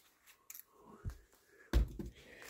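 Short handling noises in a workshop: a couple of light clicks about half a second in, a soft low thump about a second in, and a heavier thump near the end, as clothing moves close past the camera.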